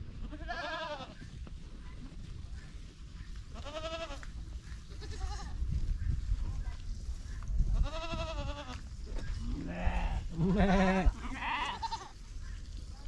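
Goats bleating, about seven quavering calls one after another, the last three coming close together near the end.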